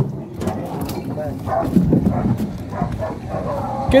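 Dogs fighting, barking, mixed with people's voices.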